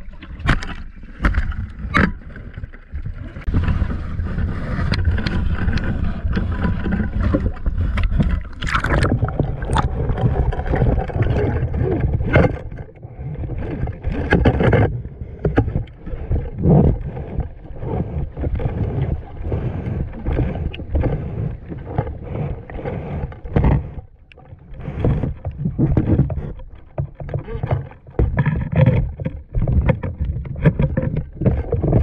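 Seawater surging and sloshing around a camera held just at and below the surface, heard as a heavy low rumble of moving water. Frequent sharp clicks and knocks run through it.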